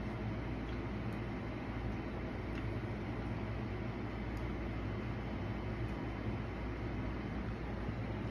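A steady low mechanical hum with a hiss over it, like a running fan or air-conditioning unit in a small room.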